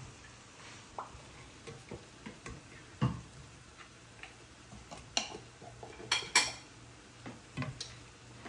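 A spoon stirring a pot of chicken curry with potatoes and peas, giving scattered clinks and scrapes against the pot, the loudest pair about six seconds in. A faint steady hum runs underneath.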